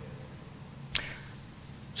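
Quiet room tone with faint low hum, broken by one short, sharp click about a second in.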